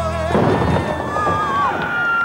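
Dance music with a steady bass breaks off about a third of a second in and gives way to a crowd clapping, a dense crackle of many hands, with a held note from the music lingering over it.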